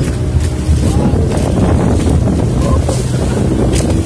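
Small outrigger boat under way: its engine running with a steady low hum, wind buffeting the microphone, and water splashing against the hull.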